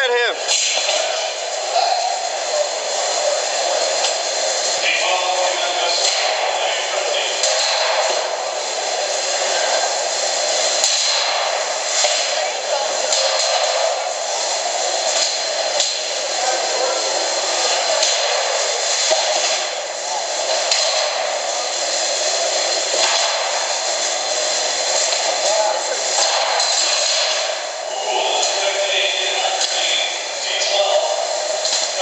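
Indistinct crowd chatter and general arena noise around a small combat-robot fight, with scattered sharp knocks throughout.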